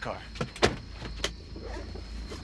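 A car door being opened: a sharp latch click about two-thirds of a second in, then a smaller knock, over a low steady rumble.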